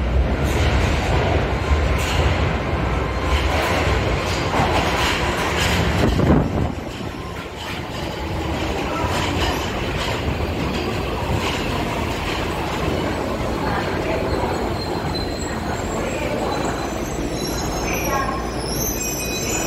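Tokyo Metro Marunouchi Line subway train running into the station and braking to a stop, a continuous rumble of wheels on rail that is loudest about six seconds in and then settles. A thin high wheel or brake squeal comes near the end as it stops.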